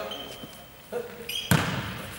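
A ball is struck once by hand about one and a half seconds in, a sharp smack that rings on in the echo of a large sports hall.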